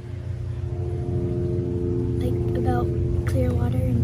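A steady low motor rumble with a constant hum, growing louder over the first second and then holding, under a girl's soft speech that begins about two seconds in.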